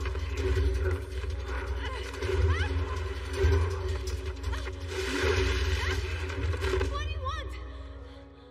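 Film action-scene soundtrack: dramatic music layered with dense sound effects and wordless vocal sounds over a low rumble. About seven seconds in there is a quick run of high squeals that rise and fall, and then the whole mix drops away.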